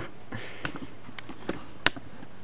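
Handling noise: a few light clicks and knocks, scattered and irregular, with the sharpest knock near the end, as the clear plastic storage-box enclosure and the camera are handled.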